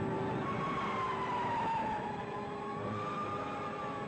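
Old black-and-white sci-fi film soundtrack: a wavering high whine that slowly falls and then rises again, over a steady hiss and rumble, during a flying-saucer attack scene.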